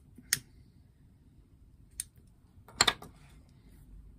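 A few short, sharp clicks over quiet room tone: one about a third of a second in, a fainter one at about two seconds, and a quick double click near three seconds, the loudest of them.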